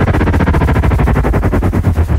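Rapid electronic glitch-stutter effect, a fast even train of short pulses over heavy bass, part of a dubstep-style intro track.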